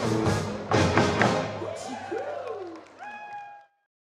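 Live country band playing the last bars of a song, ending on two sharp accented hits about a second in that ring out and fade. A few held tones sound near the end and then cut off suddenly into silence.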